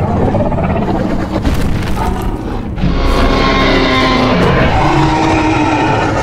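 Film sound design of large theropod dinosaurs growling at each other: a low rumbling growl, then about halfway in a louder, sustained roar.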